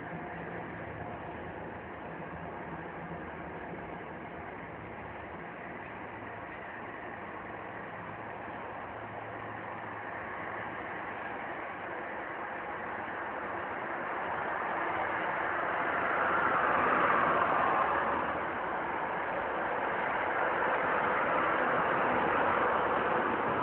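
Steady motor-vehicle engine noise with a low hum, swelling louder after about two thirds of the way through, easing briefly, then rising again near the end.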